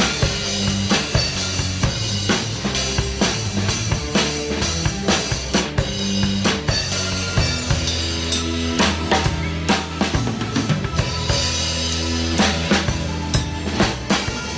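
Drum kit played in a steady beat along to a backing song: snare, bass drum and Sabian cymbals struck with LED light-up drumsticks, over the song's steady bass and pitched accompaniment.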